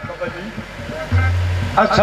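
Qawwali accompaniment of harmonium and hand drums: a quieter first second of scattered drum strokes, then a loud low held note from about a second in, with a man's singing voice coming in near the end.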